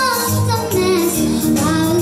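A young girl singing a held, gliding melody over Yamaha electronic keyboard accompaniment with bass notes and a steady programmed beat.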